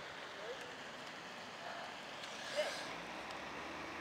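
Faint, steady outdoor background noise with a few brief, distant voice fragments.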